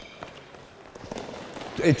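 Handball players running on an indoor sports hall floor: faint footsteps and a couple of light knocks in a hollow room. A man starts speaking near the end.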